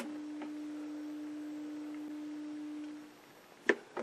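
A steady, low, pure test tone from the Admiral 20B1 television's speaker, reproducing the test generator's audio. It stops a little past three seconds in, and a single click follows.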